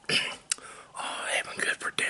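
A man whispering close to the microphone, with a sharp click about half a second in and another just before the end.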